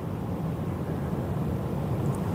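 Steady low background rumble (room noise) in a pause in speech, with no distinct events.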